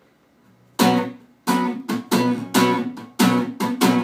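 Acoustic guitar strummed in a rhythmic arrocha pattern, starting about a second in after a brief quiet, each stroke ringing out with chords.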